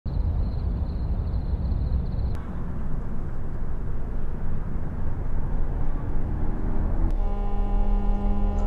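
Night city ambience: a steady low rumble of distant traffic, with a thin steady high whine over it for the first two seconds. The sound changes abruptly twice, and about a second before the end a steady pitched tone with overtones comes in as music begins.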